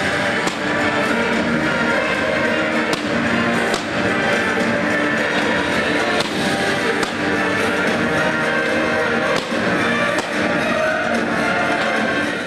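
Music playing with fireworks going off over it: irregular sharp bangs and crackles from aerial shells and ground fountains.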